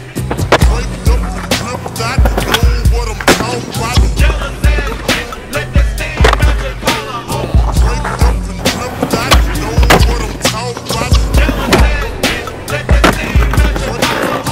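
Skateboard on stone paving, with board pops, landings and wheels rolling. It plays over a music track with a heavy repeating bass line and beat.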